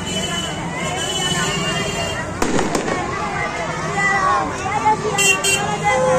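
Firecrackers going off over the chatter of a street crowd: a sharp bang about two and a half seconds in, a second crack right after it, and two more quick cracks near the end.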